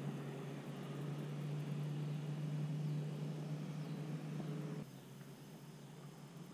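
A steady, low engine-like hum that cuts off suddenly about five seconds in, leaving faint background hiss.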